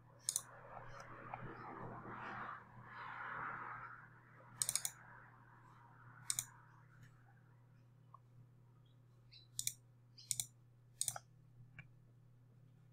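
Computer mouse button clicks, about six sharp separate clicks with a quick double click about four and a half seconds in, with a soft rushing noise over the first few seconds.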